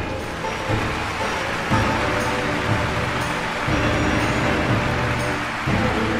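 Symphony orchestra playing a dense, sustained passage, with massed bowed strings over held low notes.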